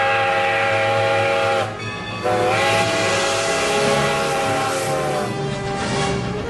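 Steam locomotive whistle sounding two long blasts, a chord of several tones with a short break between them, each blast sliding slightly up in pitch as it starts. Steady low running noise of the passing train lies underneath.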